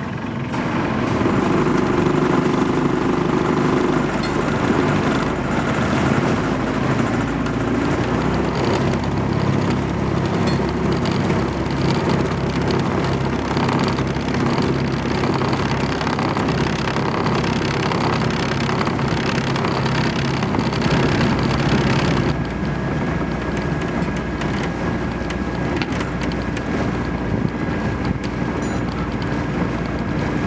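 Sailboat's rebuilt inboard diesel engine running steadily under way, with noise from the camera tripod vibrating against the boat. About two-thirds of the way through, the sound changes abruptly and drops a little in level.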